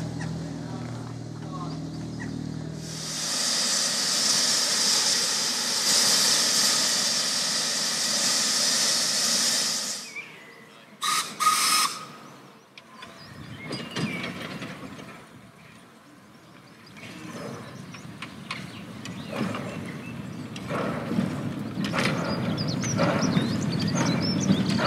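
Replica Steam Elephant steam locomotive standing in steam, giving a loud, steady hiss of escaping steam for several seconds. This is followed by two short, sharp bursts, then quieter hissing with scattered mechanical knocks.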